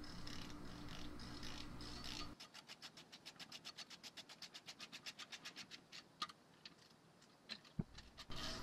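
Ratchet wrench clicking rapidly and evenly, about ten clicks a second for three or four seconds, as a brake caliper mounting bolt is run in, then a couple of single clicks. A low steady hum underlies the first two seconds or so and stops abruptly.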